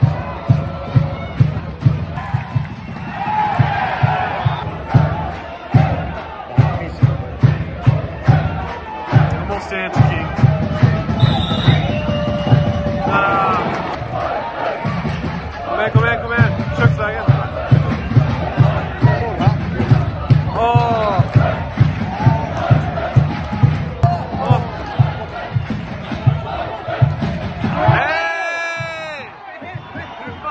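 Supporters in the arena stands beating a drum in a steady rhythm, about three beats a second, with the crowd chanting over it. The drumming breaks off briefly midway and again near the end.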